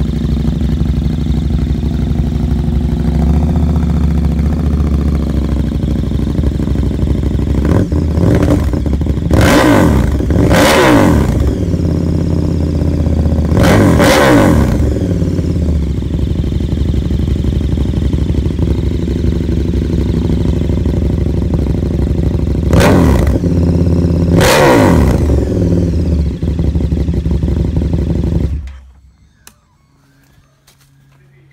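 KTM 1290 Super Duke R's V-twin engine, breathing through an Austin Racing exhaust can and link pipe, idling very loudly and blipped hard several times: a cluster of quick revs about eight to eleven seconds in, another around fourteen seconds, and two more at about twenty-three to twenty-five seconds, each rising sharply and falling back to idle. The engine is switched off about a second and a half before the end.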